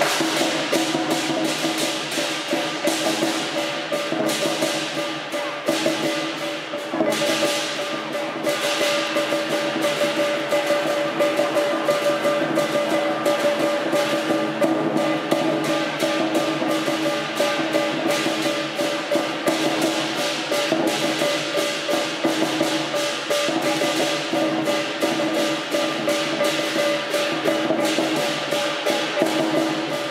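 Chinese percussion accompaniment: a fast, even run of drum strokes over a steady ringing tone that holds throughout.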